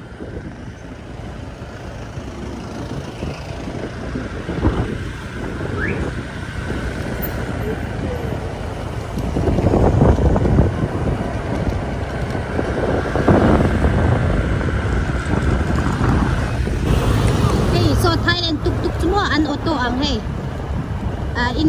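Motorbike riding through city traffic: engine and road rumble with wind on the microphone. It grows louder from about nine seconds in.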